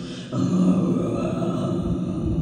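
A woman's solo voice in a vocal performance: a short breath in, then a low, steady sung tone held for the rest of the moment.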